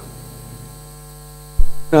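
Steady electrical mains hum in a pause between words, with a short low thump about one and a half seconds in.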